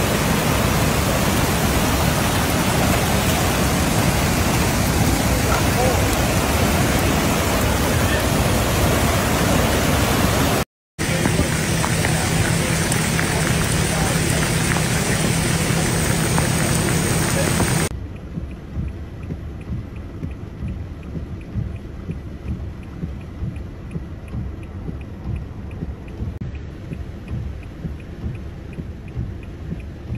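Loud, steady rushing of flash floodwater and rain, broken by a brief cut about eleven seconds in. After about eighteen seconds it drops to a quieter, uneven rush.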